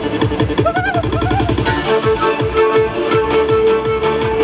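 Andean folk tune over a steady electronic dance beat. About halfway through, a melody of long held notes comes in on zampoña panpipes.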